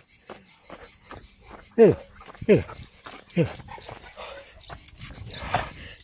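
Crickets chirping in a steady, fast pulse, about five chirps a second, behind a man's coaxing voice.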